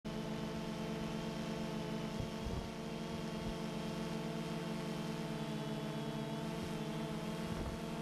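Drone's electric motors and propellers running in hover and slow flight: a steady multi-tone hum with a slight pulsing beat, wavering briefly about two and a half seconds in and again near the end.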